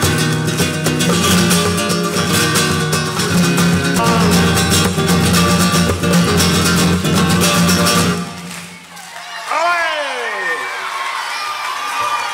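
Flamenco guitar played with many quick strokes. It stops about eight seconds in, and a long shouted call follows.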